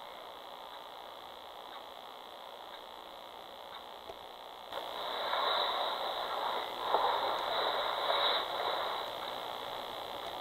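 Steady electronic static with a constant high whine, as from a night-vision baby monitor's speaker. About five seconds in a louder, rougher noise comes through over the hiss, swelling and fading.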